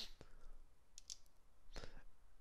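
A few faint, short clicks spread over the pause, over a low steady background hum.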